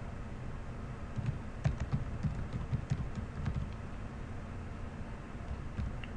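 Typing on a computer keyboard: a short run of irregular keystrokes, mostly in the first half, over a faint low steady hum.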